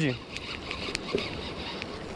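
Steady wash of water and wind around a small boat, with a few faint clicks.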